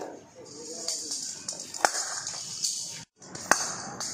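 A blind-cricket ball, a plastic ball with ball bearings inside, rattling in a high, hissy way as it is bowled and rolls along the pavement. There is a sharp knock just under two seconds in and another about three and a half seconds in, with voices calling at the start.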